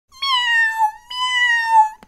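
A cat meowing twice: two long, drawn-out calls of just under a second each, each sagging a little in pitch at the end.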